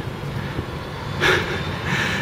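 Steady low rumble of street noise, like traffic, with a short hiss a little past halfway through.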